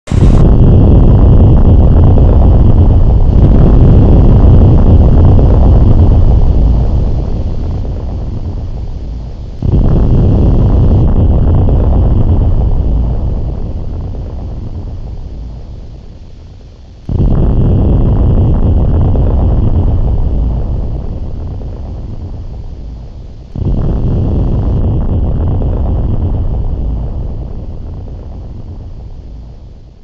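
Loud, deep rumbling noise like wind or surf, in four swells that each start suddenly and slowly fade away.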